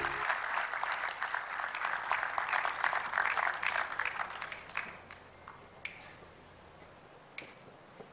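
Audience applauding: dense clapping that thins out and dies away after about five seconds, leaving two single claps near the end.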